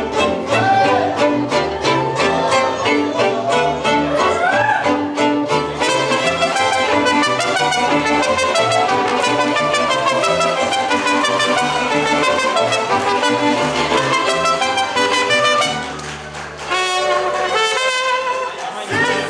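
Live mariachi band playing: violins carrying the melody together with trumpet, over strummed guitars. The music drops briefly near the end before the strumming comes back in.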